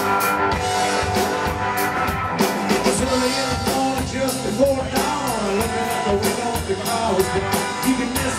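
Live roots rock-and-roll trio playing: electric guitar over upright bass and a drum kit keeping a steady beat, with some bent guitar notes mid-passage.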